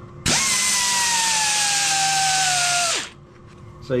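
Power file (narrow belt sander) grinding the rough cast surface of a motorcycle engine casing. It starts a moment in, runs for a little under three seconds with a whine that falls steadily in pitch, then cuts off.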